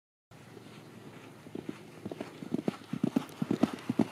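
Hoofbeats of two ridden horses galloping over grass, a quick uneven rhythm of dull thuds that grows steadily louder as they approach.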